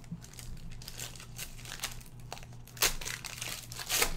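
Foil wrapper of a 2016 Panini Spectra football card pack crinkling as it is handled and opened, with louder crackles about three seconds in and at the end.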